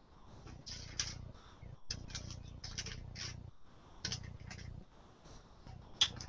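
Pages of a Bible being leafed through: a faint run of short, irregular paper rustles with brief pauses.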